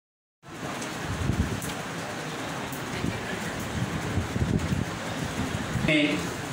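Steady room noise with an uneven low rumble and no clear speech, starting about half a second in.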